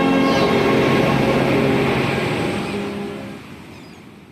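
Church bells ringing together in a dense peal, fading out in the second half.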